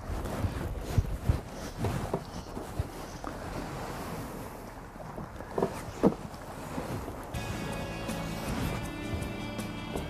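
Wind noise on the microphone and water around a small boat, with a few sharp knocks. Background music with sustained tones comes in about seven seconds in and continues.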